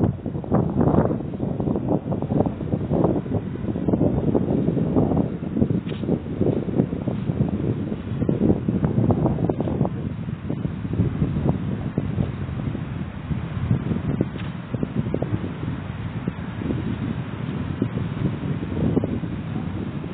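Strong gusty wind buffeting the phone's microphone: a low rumble that swells and eases with the gusts, somewhat louder in the first half.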